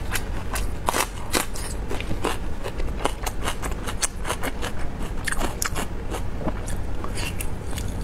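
Close-miked eating: chewing and biting into a glazed, grilled skewered food, heard as a rapid irregular run of wet mouth clicks and smacks, with a steady low hum underneath.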